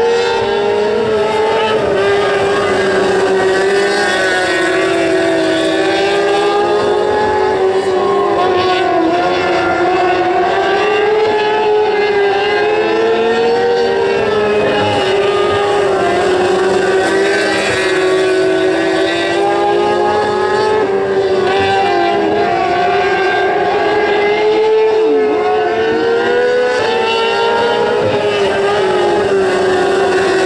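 Several small winged sprint cars racing on a dirt oval, their engines running together at high revs. The pitch rises and falls as the cars go down the straights and lift for the turns.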